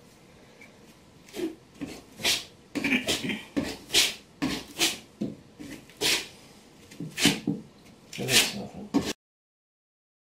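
A hand trowel scraping mortar over Schluter Kerdi waterproofing membrane, pressing it into a wall corner in quick, rasping strokes, about two a second. The sound cuts off suddenly about nine seconds in.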